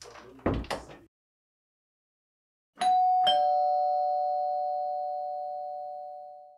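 A short thump about half a second in, then a two-note ding-dong chime like a doorbell: a higher note and then a lower one about half a second apart, both ringing on and slowly fading over several seconds.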